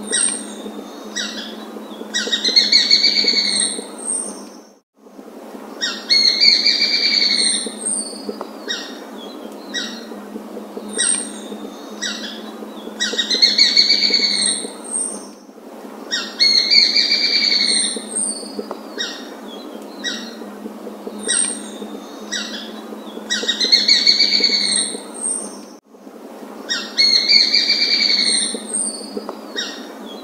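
Bird calls: a loud, rapidly pulsed call about a second long, repeated about six times and mostly in pairs, with short high chirps between, over a steady background hiss.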